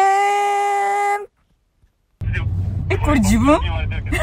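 A steady, single-pitched tone held for about a second, then a short break in the sound, then people's voices over a low rumble.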